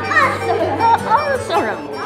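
Several children's voices calling out together during a hand-gesture group game, with music underneath.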